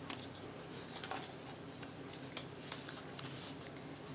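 Faint rustling and scattered light ticks of paper strips being handled as their ends are lined up together.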